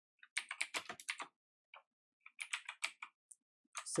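Typing on a computer keyboard: two quick runs of keystrokes, each lasting about a second, with a short pause between, then a couple of single key presses near the end.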